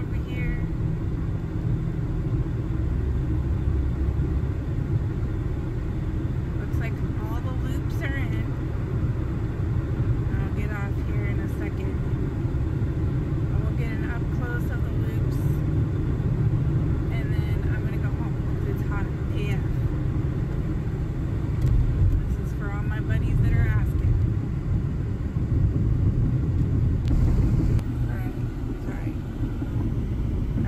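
Steady road and engine rumble heard from inside a moving car's cabin, with faint, short snatches of voice coming and going over it.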